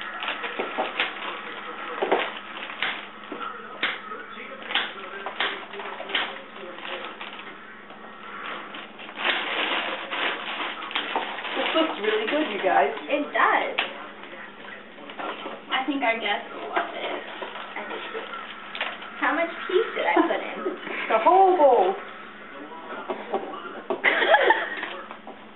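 Irregular sharp knocks of a knife chopping vegetables on a cutting board, thickest in the first half, with voices talking and exclaiming around the middle and near the end.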